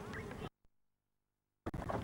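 Steady outdoor hiss with a faint call or shout, cutting to complete silence for about a second before the hiss returns: an audio gap at an edit in the camcorder tape.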